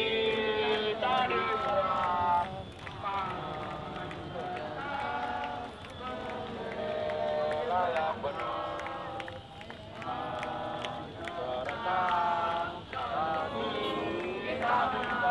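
Singing: a voice sings phrases with long held notes, with short pauses between them.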